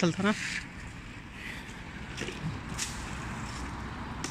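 Faint rustling of leaves and a few light clicks as a long pole is worked among the branches of a jujube (ber) tree to knock the fruit down, over a steady low outdoor hiss.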